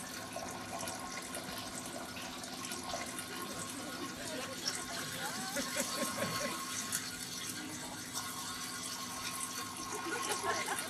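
A steady trickle of running water in a small tiled washroom.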